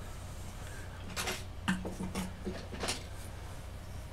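A few short knocks and rustles of hands handling a clay puppet and things on a work desk, clustered in the middle, over a steady low hum.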